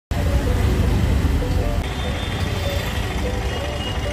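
Traffic and road noise with a steady low rumble, heard from a moving car, mixed with background music whose melody runs through it.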